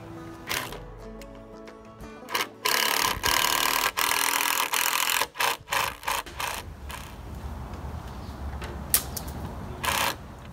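Background music, with a cordless power drill driving screws into the timber beam for a couple of seconds in the middle, followed by a few sharp knocks.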